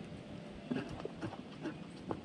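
Small Indian mongoose foraging at the base of a plastic coffee canister in dry leaf litter: about five short taps and rustles in quick succession, starting under a second in.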